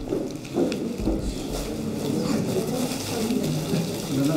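Indistinct chatter of several voices in a room, with paper rustling and crinkling as rolled wall calendars are unwrapped from their gift wrap and unrolled.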